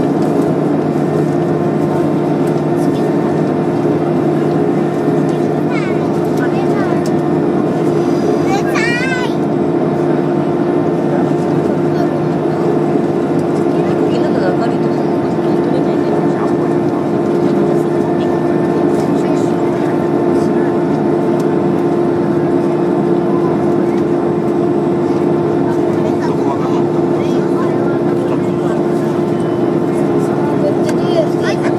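Airliner cabin noise while taxiing: a steady engine and air-system drone with a constant low hum that does not rise or fall. About nine seconds in, a brief wavering high-pitched sound rises over it.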